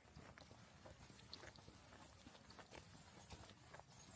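Faint footsteps of a person walking on a paved road, a string of irregular soft clicks over low outdoor background noise.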